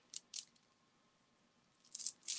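Beads of a strand necklace clicking against each other as it is handled: two short clicks in the first half second, then more faint clicks near the end.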